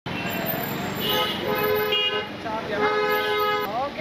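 Car horn honking in street traffic: two held honks, the first starting about a second in and lasting about a second, the second shorter, near the end.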